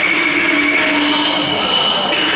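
Cantonese opera stage percussion: gongs and cymbals ringing with a dense metallic clang, a few clear tones held over a hiss. The ringing tones shift as new strokes land, once about a second in and again near the end.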